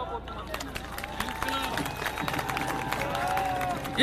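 Crowd clapping, starting about half a second in and running on as dense, scattered claps, with a few voices calling out over it.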